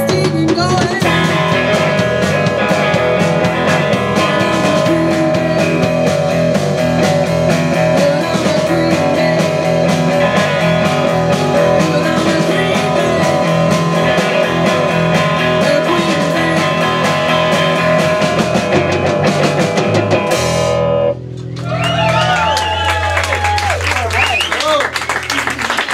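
Live 1960s-style beat group playing: fuzzy electric guitars over a drum kit with a steady beat. The song stops suddenly about 21 seconds in, and wavering, gliding guitar tones ring on through the last few seconds.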